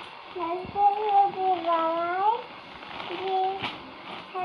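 A young girl's high-pitched voice in drawn-out, sing-song phrases, one held for over a second before it rises; a short click near the end.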